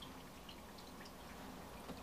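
Faint trickling and dripping of water in an open aquarium, with a few light ticks.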